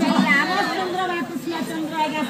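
A person's voice speaking over crowd chatter.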